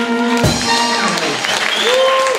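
A live soul and rhythm-and-blues band ends a song on a held chord, cut off by a final hit about half a second in, followed by audience applause and a voice.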